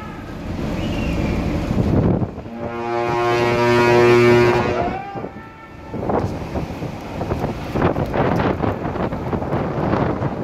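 Ship's horn sounding one steady, deep blast of about two and a half seconds, a couple of seconds in, over heavy wind buffeting the microphone and rough sea.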